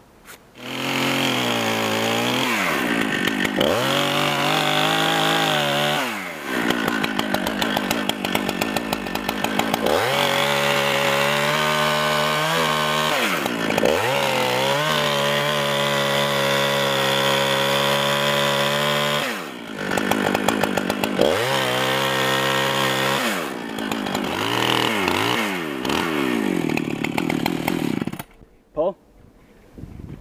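Top-handle chainsaw cutting a notch into a maple trunk at full throttle. The engine note sags and climbs back several times as the bar works through the wood, then drops away near the end.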